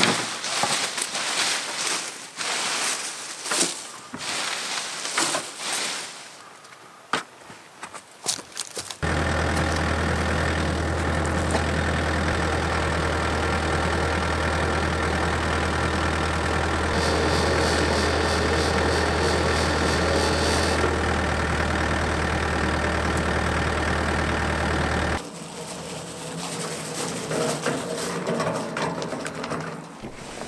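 Leafy cuttings rustling and crackling as they are pushed into a wooden bin. Then a crane truck's engine runs steadily for about sixteen seconds while its crane is working, and the sound cuts off abruptly.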